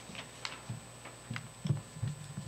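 Handling noise at a wooden podium with a microphone: a few irregular light clicks and soft knocks, about six in two seconds, as papers are set down and arranged.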